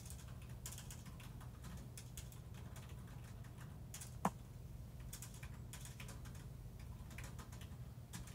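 Faint, irregular light clicks and ticks over a steady low hum, with one sharper, louder tap a little after four seconds in.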